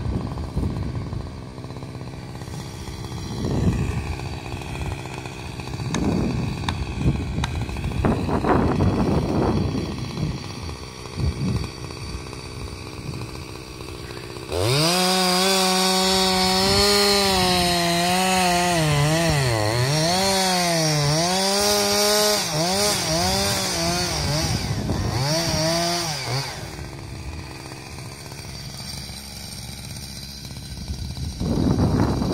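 Husqvarna 346XP two-stroke chainsaw. It opens up sharply about halfway through and runs at high revs, its pitch repeatedly dipping and recovering as it bogs under load in the cut. It drops off a few seconds before the end. Before it opens up there are only quieter, irregular sounds.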